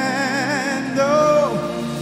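Man singing a slow worship song into a microphone over sustained backing chords: a wavering held note, then a second held note about a second in that slides down at the end of the phrase.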